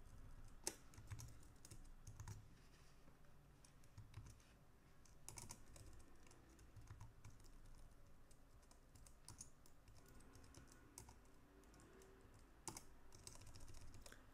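Faint computer keyboard typing: irregular, scattered key presses in small clusters, a little louder about five seconds in and near the end.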